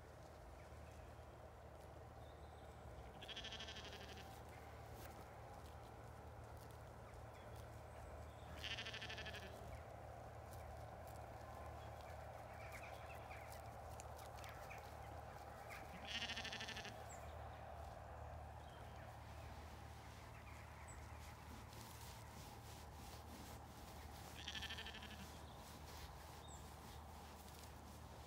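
Zwartbles sheep bleating four times, each call about a second long, spaced several seconds apart, over a faint steady background.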